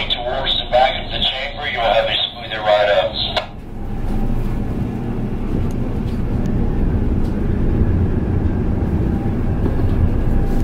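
The yacht's twin marine engines running slowly in forward gear, a steady low rumble that grows a little louder over the last few seconds.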